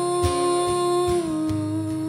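A woman's voice holding one long sung note with no words, which steps down a little in pitch just over a second in, over acoustic guitar picking.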